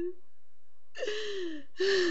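A woman sobbing: two drawn-out crying wails, each falling in pitch, one about a second in and one near the end.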